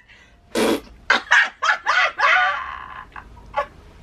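People laughing in a string of short bursts, with a sharp squeal-like burst about half a second in.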